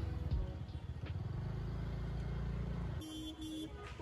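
Steady low rumble of road traffic and idling engines in stopped city traffic. It cuts off abruptly about three seconds in, giving way to a quieter stretch with a short tone sounding twice.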